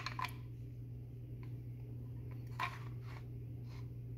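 A few short, faint clicks and knocks of plastic parts being handled, over a steady low hum.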